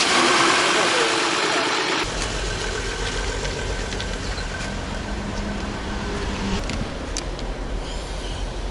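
Volkswagen Touareg engine running just after being started. It is louder for the first two seconds, then settles to a steady idle.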